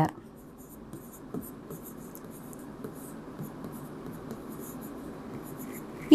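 A pen stylus writing on an interactive whiteboard screen, faint light scratches and a few small taps as a word is handwritten, over a steady low background hum.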